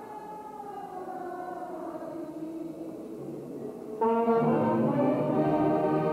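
A village wind band with brass and clarinets playing. A softer passage gives way, about four seconds in, to the full band coming in much louder on held chords.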